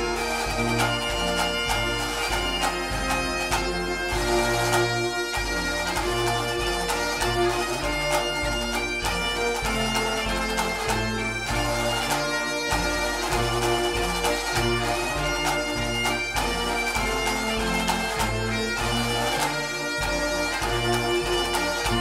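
Bagpipe music: a tune played over the pipes' steady drones.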